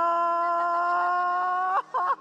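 A woman's voice holding one long, high-pitched wail for nearly two seconds, its pitch creeping slightly upward, then breaking off into short, broken cries near the end.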